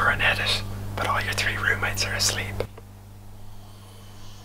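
A man whispering over a steady low hum. Both stop suddenly about two and a half seconds in, leaving quiet room tone.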